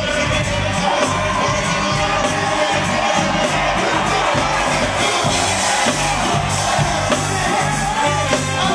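Live hip-hop/funk band music with a steady beat and vocals, over crowd noise.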